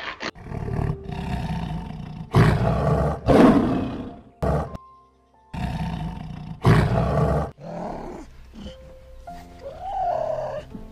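Lioness roaring in a run of loud, rough calls, with a short pause about five seconds in, over soft background music.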